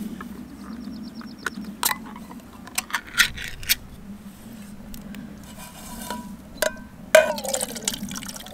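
Clicks and clinks of a metal food can being opened by hand: a quick run of small ticks about half a second in, then scattered sharp clinks, the loudest about seven seconds in.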